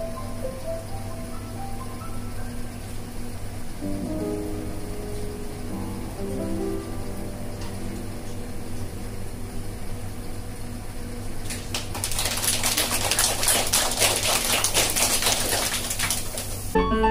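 Grand piano played softly, slow single notes over a steady low hum. About twelve seconds in, the audience breaks into applause, which is louder than the piano was.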